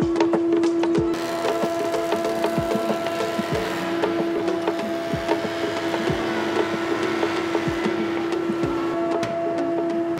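Combination jointer-thicknesser running with a steady motor and cutterhead hum while an oak board is planed, with scattered knocks as the board is handled.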